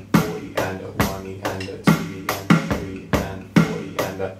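Electronic drum kit playing a steady groove: eighth notes with the right hand, kick drum on one and three plus the 'and' of three, snare on two and four with an extra sixteenth-note snare on the 'a' of two.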